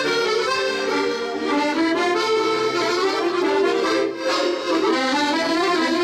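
Maugein chromatic button accordions played together in a traditional tune: a running melody over sustained chords, with a brief drop in loudness about four seconds in.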